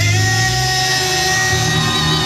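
Live rock band music: an electric guitar chord held and ringing out over a steady low bass note, with no drum hits.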